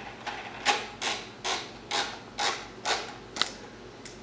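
Beretta 391 shotgun's forearm cap being screwed down by hand, a short rasping scrape with each twist, about seven twists roughly every half second.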